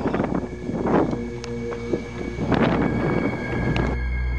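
Wind buffeting the camera microphone in irregular gusts, with steady-toned music fading in underneath.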